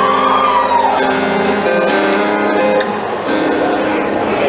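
Acoustic guitar strummed in a steady pattern of chords.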